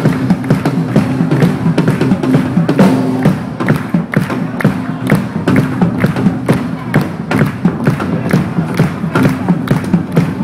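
Live band music: a drum kit keeps a steady beat under sustained, droning tones, with a kilted piper playing bagpipes.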